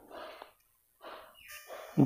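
Pen writing on paper: three short, faint scratches as the answer is marked and the next part is labelled.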